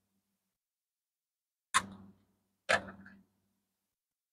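Two sharp clicks about a second apart as Lincoln cents are handled, a coin set down or tapped against a hard surface.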